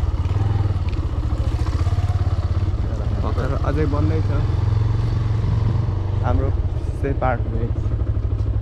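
Motorcycle engine running at low speed as the bike rolls slowly along, a steady low pulsing thrum. A voice is briefly heard a few times over it.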